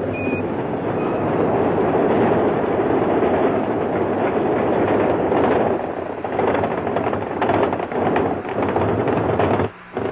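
Space Shuttle Columbia's solid rocket boosters and main engines firing during ascent: loud, steady, crackling rocket noise. The sound cuts out for a moment near the end.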